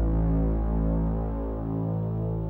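Background music of a suspense score: a deep, steady sustained drone with no melody.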